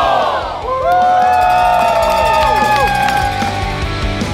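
A small crowd cheering and yelling together, several voices holding long shouts for a couple of seconds before they die away near the end, with music underneath.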